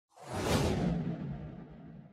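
Cinematic whoosh sound effect that swells within about half a second and then fades out over the next second and a half, with a low rumble under it.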